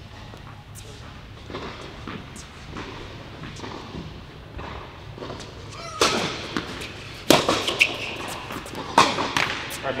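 Tennis ball struck by rackets in a rally on an indoor hard court: a quiet stretch, then three sharp pops in the second half, about a second and a half apart.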